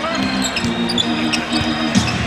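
A basketball dribbled on a hardwood court, with short sneaker squeaks, over the steady noise of an arena crowd and music.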